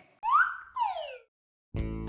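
Comedy sound effect: a short whistle-like tone sliding up, then another sliding down. Background music starts just before the end.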